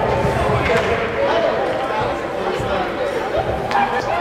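Voices of people talking in an indoor ice rink, with one sharp knock near the end.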